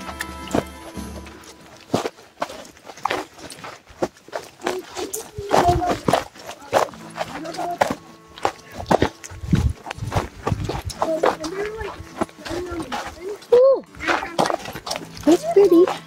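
Irregular footsteps on a stony dirt trail, with brief bits of voices in between. Faint steady music sits underneath.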